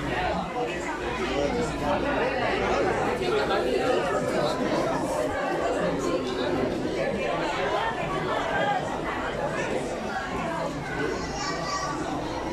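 Crowd chatter: many people talking at once, their voices overlapping so that no single voice stands out.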